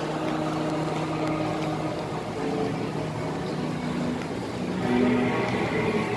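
Shopping-mall ambience: a steady murmur of shoppers and hall noise, with faint background music holding long low notes.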